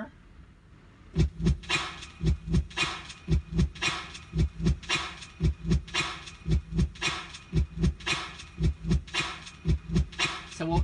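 Korg Pa1000 keyboard playing a sampled rhythmic percussion loop through its speakers: sharp hits, each with a low thud, at about three a second, starting about a second in. The sample sustains rather than decaying, after its release was just edited to keep going.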